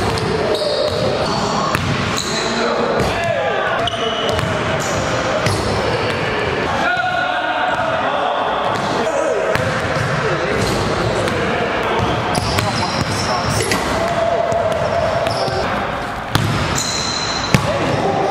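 A basketball bouncing on a hardwood gym floor during dunk attempts, with people's voices talking indistinctly.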